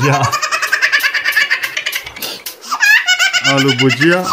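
High-pitched, rapidly pulsing laughter, like a baby's or cartoon laugh, for about two seconds; a man's voice comes in near the end.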